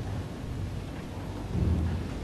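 Low, rumbling gym room noise with a steady hum. A louder low swell comes in about a second and a half in.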